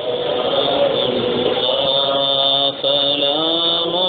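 A single voice chanting an Arabic salawat, blessings on the Prophet, unaccompanied, in long held melodic notes. There is a short breath break about three quarters of the way through.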